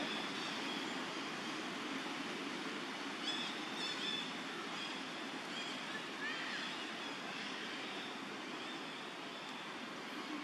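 Steady rushing background noise, with a few faint, short, high chirps about three to four seconds in and again past the middle.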